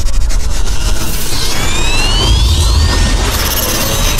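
Cinematic intro sound effects: a deep booming rumble under a swelling hiss, with two rising whistle-like tones climbing from about one and a half to three seconds in.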